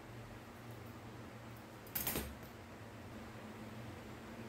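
A single short, sharp metallic clatter about two seconds in from a pair of sewing scissors being handled at a zipper, over faint room noise with a low hum.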